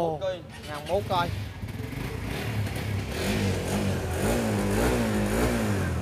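Sport motorcycle engine running and being revved, its pitch rising and falling several times.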